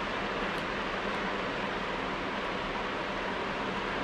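Steady, even background hiss with no speech.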